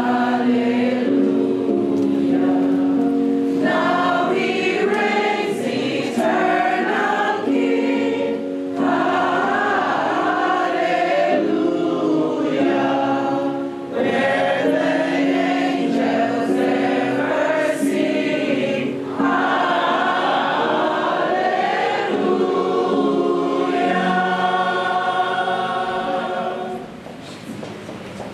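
A congregation singing together, many voices at once; the singing fades near the end.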